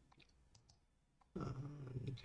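A few faint computer keyboard and mouse clicks, followed about halfway through by a short low hum of a voice.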